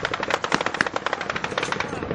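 Machine gun firing a long continuous burst: a rapid, even stream of shots at about a dozen a second.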